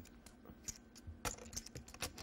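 Poker chips clicking as a player handles and riffles them at the table: a few faint, scattered clicks, the clearest about a second and a quarter in.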